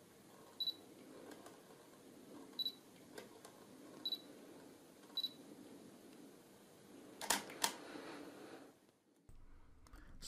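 Canon 70D DSLR giving four short high autofocus-confirmation beeps a second or two apart as focus locks on a macro target, then its shutter firing with two quick clicks about seven seconds in.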